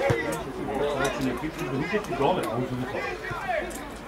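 Spectators' voices: several people talking at once in overlapping chatter.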